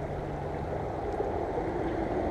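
Steady outdoor background noise, a low even rush with a faint low hum under it that stops near the end.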